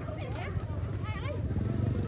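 A motor vehicle's engine idling with a steady low hum, under the scattered chatter of a crowd.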